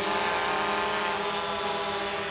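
DJI Mavic Pro quadcopter in flight, its propellers giving a steady buzzing hum whose pitch drifts slightly as it is manoeuvred.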